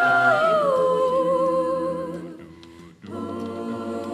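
A cappella group singing with no instruments. A solo female voice holds a high note, slides down to a lower held note and fades away over sustained backing voices. After a brief near-pause, the group comes back in on held chords.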